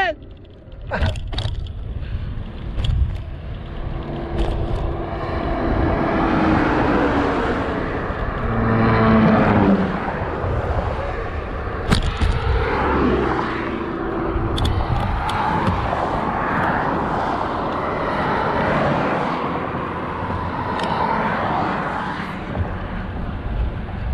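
Wind rumbling on the microphone of a moving bicycle, with road traffic going by. A vehicle passes about nine seconds in, its engine note falling in pitch as it goes by.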